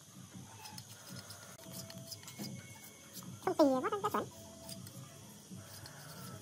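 Steel blade shaving and scraping a thin bamboo strip by hand, heard as faint scattered ticks and scrapes. A little past halfway, a short wavering call with a dipping and rising pitch is the loudest sound.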